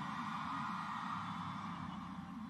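Large festival crowd cheering and screaming in reply to a call from the stage, a steady, fairly subdued wash of voices.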